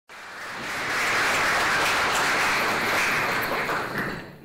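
Audience applauding: the clapping builds over the first second, holds, and dies away near the end.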